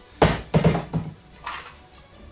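A corded electric drill set down on a kitchen countertop: a sharp knock just after the start, a few more clunks and rattles about half a second later, and a lighter knock near the end.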